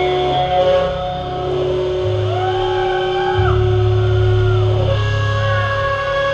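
Amplified electric guitars holding long sustained notes, with a few sliding pitch bends about two to three seconds in, over a steady low bass drone that swells about two seconds in.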